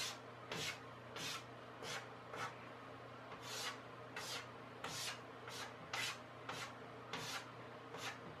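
Chalk drawn across a chalkboard in quick short strokes, about two a second, each a brief scratchy rasp as a line is made.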